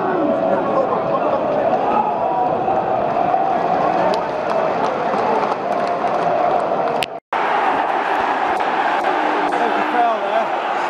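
Football stadium crowd singing a chant, many voices holding a wavering tune over general crowd noise. The sound cuts out completely for a split second about seven seconds in, then comes back a little fuller.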